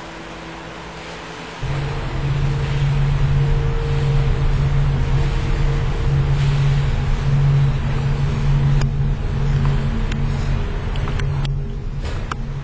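A low, ominous rumbling drone, a horror-film sound effect, that cuts in suddenly about a second and a half in and holds steady on several deep tones. A few sharp clicks come near the end.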